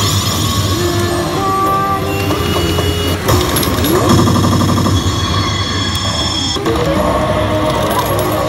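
A Basilisk Kizuna 2 pachislot machine playing its effect sounds and music over a steady low hum, as the game awards a Kizuna bead. The effects change abruptly about three seconds in and again near the seven-second mark.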